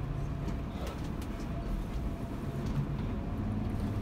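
Tour bus engine running with road noise as the bus drives along, heard from on board, with a few light clicks or rattles in the first second or two.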